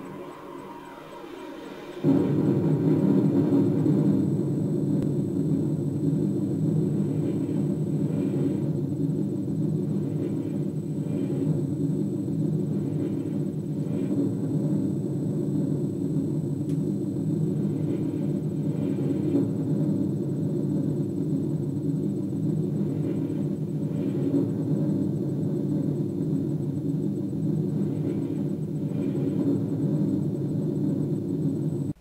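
A deep, steady rumble, like the roar of a large explosion on a sound track, starting suddenly about two seconds in and holding level throughout.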